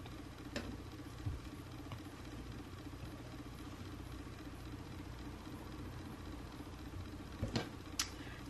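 A steady low hum of room tone, with a few light clicks of fingertips tapping a tablet screen, the last two close together near the end.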